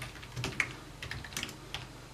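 Keystrokes on a computer keyboard: about six light, irregular clicks as a command is typed to switch the relay off.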